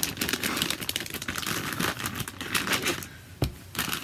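Clear plastic zip-top bag being handled and opened: a dense run of crinkles and small sharp clicks that eases off about three seconds in, with one sharp click, then more crinkling near the end.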